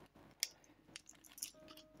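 Faint handling noise of a small plastic zip-lock bag being put down: a sharp click about half a second in, then a few light ticks. A short faint music tone comes near the end.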